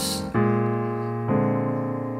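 Digital stage piano playing left-hand blues chords on B-flat, each struck and held, twice about a second apart, as part of a 12-bar blues in F.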